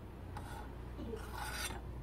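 Metal ladle scraping against the inside of a stainless steel pot, twice: a brief scrape, then a longer one about a second and a half in.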